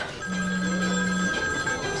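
A phone ringing with a steady electronic ring at several pitches, a lower hum joining it for about the first second.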